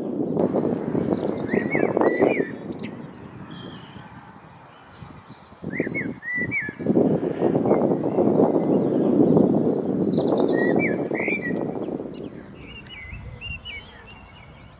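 Common blackbird singing: short warbled phrases, three of them a few seconds apart, then a run of thin twittering near the end. Beneath them is a louder, low rushing sound that swells and fades twice.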